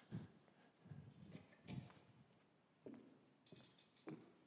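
Near silence with a few faint soft knocks and a short rustle near the end, as the wearer of a headset microphone walks and handles its transmitter to turn it down.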